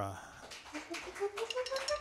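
Light, scattered applause from a small audience, with a faint tone rising steadily in pitch over it from about a second in.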